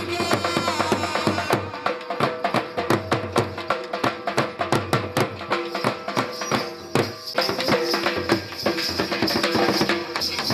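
Punjabi folk dance music led by dhol drumming: a fast, steady drum beat, with a melody over it for about the first second and a half.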